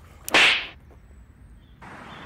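A jump rope's cable whipping through the air once: a short, sharp swish about a third of a second in, starting with a click.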